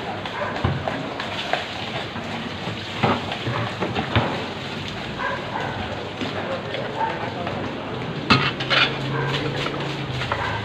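Busy fish-stall ambience while a stingray is being filleted: a steady bed of background noise and chatter, with scattered knocks and clatters. The two sharpest come close together near the end, and a low steady hum sets in for the last two seconds.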